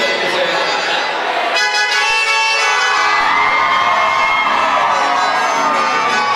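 Live chamamé music, guitar and accordion, with a crowd cheering and shouting over it; a long sliding pitch falls slowly in the second half.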